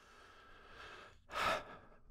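A man breathing between sentences: a faint, drawn-out breath out, then a short, louder breath in about a second and a half in.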